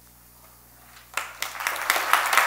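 A short hush, then audience applause breaks out about a second in and swells.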